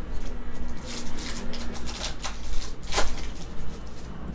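A trading card pack's wrapper is crinkled and torn open and the cards are handled, making a run of crackling rustles with a sharper one about three seconds in.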